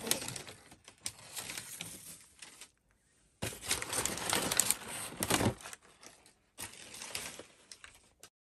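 Brown kraft packing paper being handled and pulled out of a cardboard box, rustling and crackling in three bursts with short silent gaps between them.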